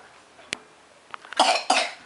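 A person coughing twice in quick succession, about a second and a half in, after a single sharp click.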